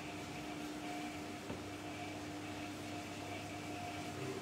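Steady low kitchen background hum with a faint even hiss and two faint steady tones, like an appliance or fan running; no sharp events.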